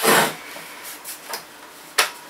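A plastic Dell laptop case being handled on a worktop: a loud scraping knock as it is lifted and turned on its edge, a few light taps, and a sharp click right at the end.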